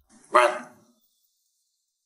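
A man's single short, loud shout, rising sharply and dying away within about half a second.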